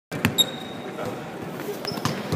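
Basketball arena ambience: a ball bouncing on the hardwood with a sharp knock near the start, followed by a high squeak that fades over about half a second and a second short squeak near the end, over a steady hum of background voices in the big hall.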